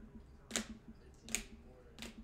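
Two sharp plastic clicks about a second apart as rigid plastic card holders are handled and knocked against each other.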